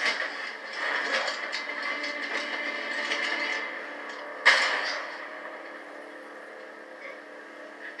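Film soundtrack played through a TV speaker, thin and without bass: fight noises of bashing for the first few seconds, then a single loud gunshot about four and a half seconds in that dies away into a quieter stretch.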